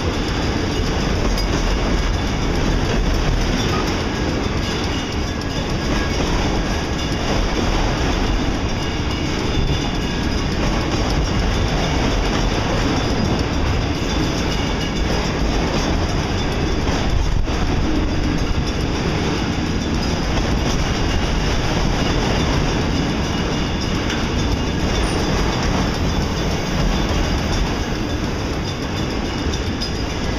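Freight train of enclosed autorack cars rolling past, steel wheels running on the rails with a steady, unbroken noise.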